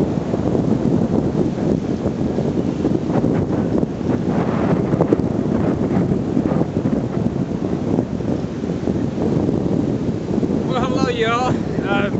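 Wind buffeting an outdoor microphone: a steady, loud low noise with gusty swells. A man's voice starts near the end.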